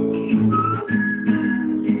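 Acoustic guitar played by hand, a run of chords with fresh notes every half second or so and a thin high note held above them.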